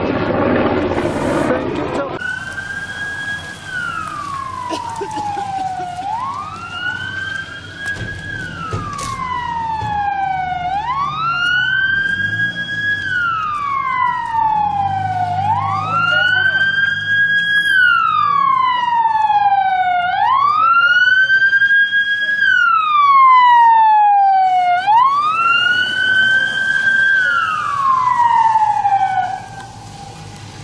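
An emergency-vehicle siren wails in slow, even cycles. Each cycle climbs quickly, holds at the top, then slides down over a few seconds, about six times in all. It starts about two seconds in, after a burst of dense noise, and stops just before the end.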